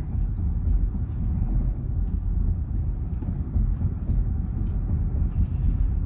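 Car driving along a road, heard from inside the cabin: a steady low rumble of tyres and engine.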